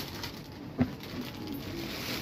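Faint, low bird cooing in the background, with a single sharp click a little under a second in from the plastic-wrapped fabric packs being handled.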